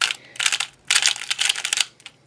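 Congs Design YueYing 3x3 speed cube being turned quickly by hand: its plastic layers slide and click in three quick runs of turns with short pauses between.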